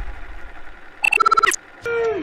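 Electronic logo-intro sound effect: a low boom dying away, then about a second in a rapid run of high electronic beeps lasting half a second that cuts off suddenly. A click near the end marks the cut to the game film.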